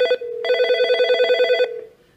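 Nortel T7316 digital desk phone ringing for an incoming call: a fast-warbling electronic ring, a short burst, a brief gap, then a longer burst of about a second that dies away near the end.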